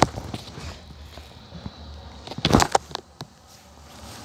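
Footsteps on gravel: a few scattered steps, with a louder cluster about two and a half seconds in, over a faint low rumble.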